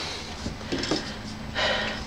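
Low rumble of a hand-held camera being moved about, with a short breath near the end.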